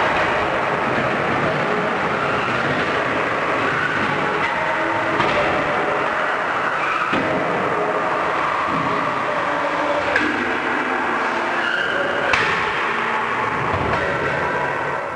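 Combat robots running: a steady whine of electric motors at several shifting pitches, broken by three sharp knocks in the second half.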